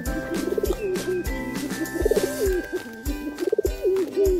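Domestic pigeons cooing, three rolling, warbling coos, over background music with a steady beat.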